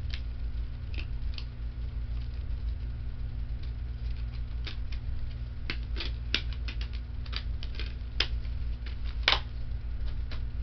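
Small hard objects being handled by hand: scattered light clicks and taps, coming thicker in the second half, with one louder clack near the end, over a steady low hum.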